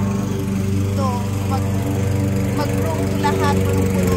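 Petrol lawn mower engine running steadily at a constant pitch.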